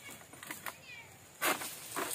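Pole-mounted sickle (egrek) worked against the base of an oil palm frond: a few light knocks, then one loud rasping cut about one and a half seconds in as the blade bites into the fibrous frond stalk.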